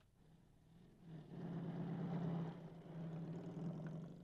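A car engine running, swelling about a second in and then holding steady.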